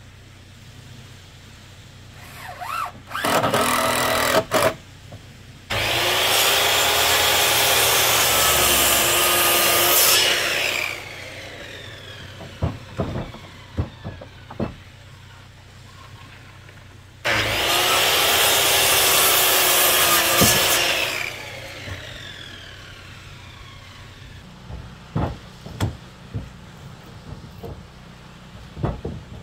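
A cordless drill briefly drives a screw into a wooden post. Then a DeWalt circular saw makes two cuts through dimensional lumber, each about four seconds long and followed by the blade winding down, with scattered knocks of wood between and after.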